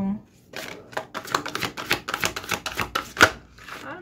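A thick deck of oracle cards being shuffled by hand: a quick, uneven run of cards flicking and slapping against each other, with one sharper knock about three seconds in.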